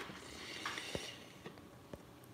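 A faint breath out just after a drink through a straw, then a few soft clicks.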